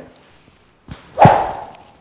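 Rubber stretch band of a Power Impact Pro 2.0, swung like a rope on a golf grip, whipping through the swing at speed: one sharp swish with a thump about a second in, dying away over about half a second.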